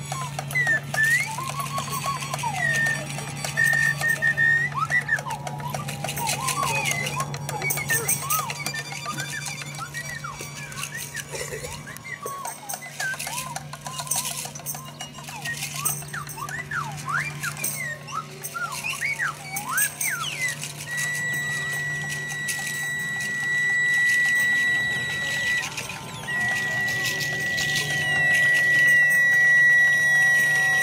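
Free improvised ensemble music from hand drums, tambourine, violin and electronics. Wavering, gliding whistle-like tones run over scattered drum hits and a low steady hum. From about two-thirds of the way in, a steady high tone is held for several seconds, breaks off briefly, and resumes.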